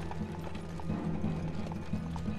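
Horse's hooves clip-clopping on cobblestones as it draws a carriage, under a low, sustained music score.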